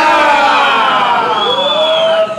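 Several people cheering together in long, drawn-out shouts: one held shout slides downward in pitch through the first second, and a second held shout rises and falls near the end.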